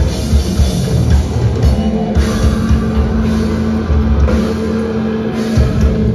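Heavy hardcore band playing live and loud, with drums and distorted guitars. A low note is held from about two seconds in.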